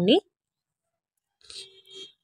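A hand rubbing across a greased stainless-steel plate, faint and in two short spells in the second half, with the plate giving a steady ringing tone as it is rubbed.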